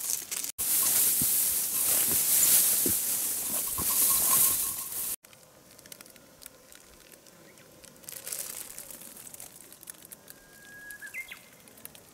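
Close rustling of leafy undergrowth and dwarf bamboo against the microphone: a loud crackly hiss for about five seconds. It cuts off suddenly to a faint outdoor background, and near the end a bird gives a short whistled call that rises and then jumps higher.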